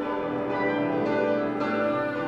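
Grand piano and symphony orchestra playing together in a contemporary classical piano concerto, sustained chords with a change of chord near the end.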